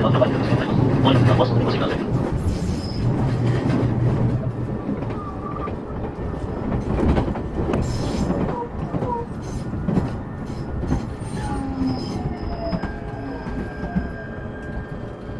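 Running noise inside a passenger train car: a loud rumble that eases after about five seconds, a few sharp knocks from the wheels over rail joints, and a thin falling whine with faint high squeals near the end as the car runs alongside a station platform.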